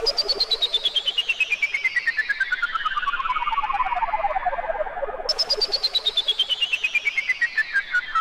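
Behringer Neutron semi-modular analog synthesizer making a rapidly pulsing tone, about eight pulses a second, that glides steadily down in pitch from high to low over about five seconds. A little after five seconds in it jumps back up high and starts falling again.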